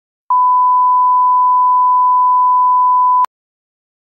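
Test tone of the kind that runs with colour bars: one steady, unbroken beep lasting about three seconds. It cuts off suddenly with a short click.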